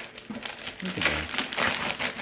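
Metallic foil gift wrap crinkling and crackling as it is pulled open by hand, in irregular bursts that grow louder about a second in.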